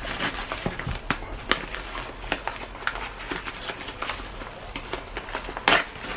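Rustling and crinkling of a bag being handled and pulled open by hand: irregular small crackles throughout, with a louder rustle near the end.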